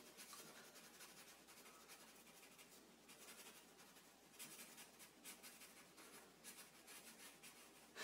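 Faint scratching of a felt-tip permanent marker on paper, in short irregular strokes, as a small area is coloured in solid black.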